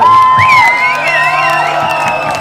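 A live rock band's electric guitars hold a sustained chord, ending a song, while the crowd cheers and whoops.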